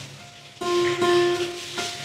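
Acoustic guitar string plucked about half a second in, ringing a clear harmonic note for over a second, followed by a second, thinner harmonic plucked near the end.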